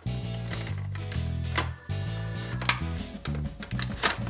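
Background music with a steady bass line, over a few sharp clicks and crackles of a plastic blister pack being peeled away from its cardboard backing.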